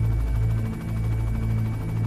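Air ambulance helicopter in flight, a steady low drone.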